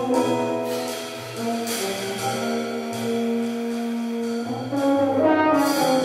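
French horn playing a jazz solo over piano, double bass and drums, with long held notes in the middle and quicker notes near the end.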